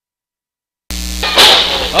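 Audio dropout: dead silence for about the first second, then the sound cuts back in abruptly with a steady low electrical hum and a loud noisy rush; a voice starts near the end.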